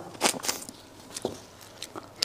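Close-miked eating sounds of braised duck head: a few short, wet clicks and smacks of biting and chewing, spaced out through the moment.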